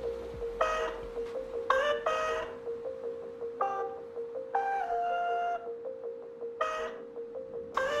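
Background music: a held note under a slow melody of separate, ringing notes, with a faint regular tick.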